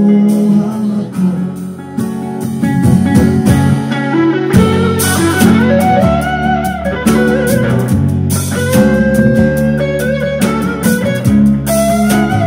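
Live instrumental band passage: acoustic guitar strumming over electric bass, with an electric guitar playing a bluesy lead line of held, gliding notes that comes in about four seconds in.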